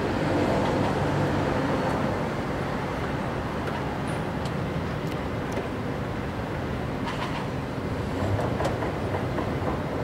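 A motor vehicle's engine idling with a steady low rumble, with a few faint clicks about seven seconds in.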